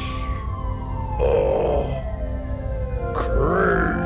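Film score of sustained synthesizer tones with one tone gliding slowly up and down. Over it come two rough, wavering vocal sounds: one a little over a second in and a longer one near the end.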